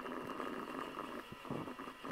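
Fast computer-keyboard typing: a faint, dense, even clatter of keystrokes.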